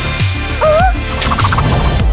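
A cartoon character's short wordless vocal sound, an 'oh'-like call that rises and then falls in pitch, followed by a brief fluttery effect, over light background music.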